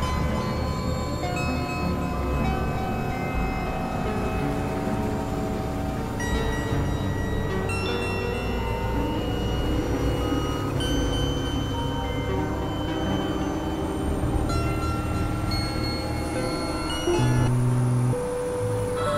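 Experimental synthesizer drone music: many overlapping sustained tones at clashing pitches, each entering and dropping out at its own time, with a louder low tone coming in near the end.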